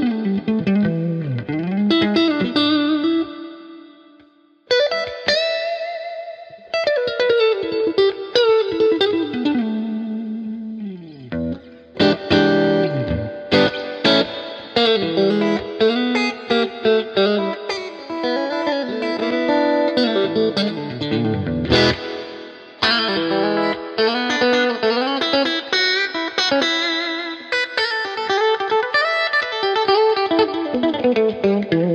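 Electric guitar, a Fender Stratocaster, played lead through the CFG CF-80 2.4 GHz wireless system, in phrases of picked notes with string bends, several phrases swooping steeply down in pitch. The wireless link runs with no connection cuts.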